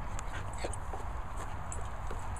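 Small shaggy dog close by on grass, making a few faint short sounds over a steady low rumble of the microphone moving about.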